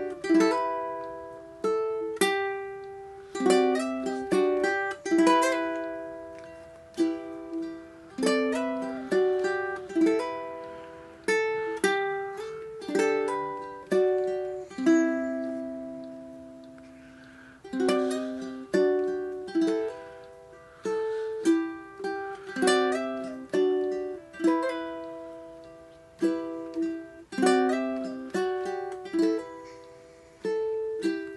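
Solo Enya ukulele played fingerstyle at a very slow tempo: single plucked notes and chords let ring and fade before the next ones.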